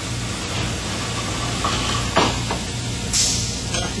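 Shot blast machine running with its dust collector and abrasive reclaim system humming steadily while its door closes. There is a single clunk about two seconds in and a short burst of hiss just after three seconds.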